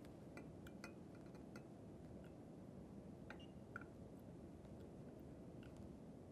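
Near silence with a few faint, small clinks and ticks of a glass beaker being handled while liquid is measured into it.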